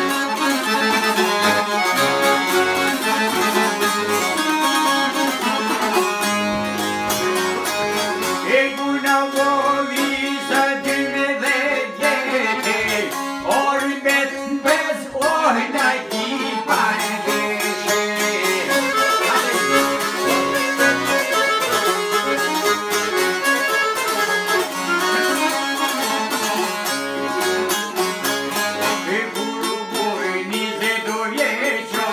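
Albanian folk tune played live on a Hohner piano accordion with two plucked long-necked lutes, a çifteli and a round-bodied sharki-style lute. Around the middle a man's voice sings over the instruments.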